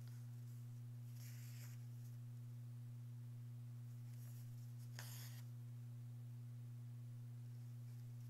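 Soft rasps of embroidery floss being drawn through cotton fabric stretched in a wooden hoop, a couple of brief pulls about a second in and again around five seconds in, over a steady low hum.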